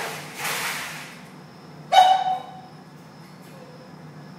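Plastic crate pan scraping across a tile floor in two pushes as a dog shoves it out from under a wire dog crate, then about two seconds in a single sharp metallic clang of the wire crate that rings briefly.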